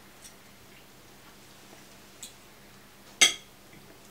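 A fork tapping and scraping lightly on a dinner plate, with one sharp, loud clink about three seconds in.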